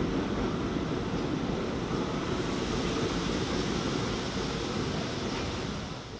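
New York City subway train moving along a station platform: a steady, low rushing noise of the train running on the rails.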